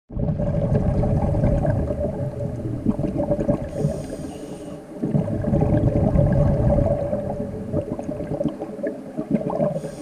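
Scuba diver breathing through a regulator underwater: long bubbling exhalations, each followed by a short hissing inhalation, about four seconds in and again near the end, with a faint steady hum underneath.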